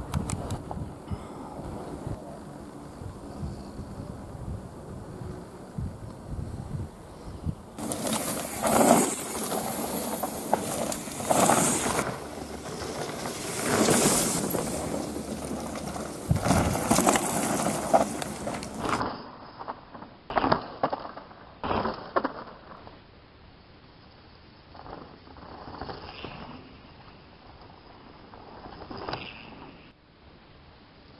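Mountain bikes ridden past on a rocky dirt forest trail, several loud rushing passes of tyres over dirt and stones. Later, fainter clicks and rattles of a bike on the trail.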